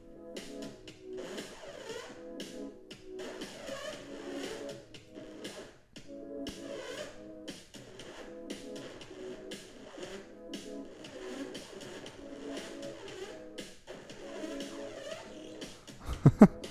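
A quiet electronic music loop playing back from a laptop: sustained chords with a light pulse running under them.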